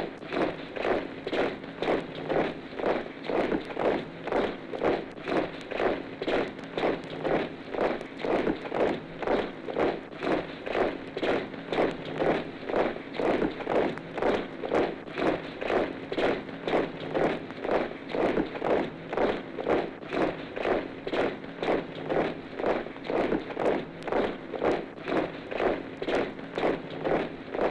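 A body of soldiers marching in step, their boots striking in a steady, even beat of about one and a half footfalls a second, on an old 78 rpm sound-effect record. The sound is dull and cut off in the treble, with a faint steady hum beneath.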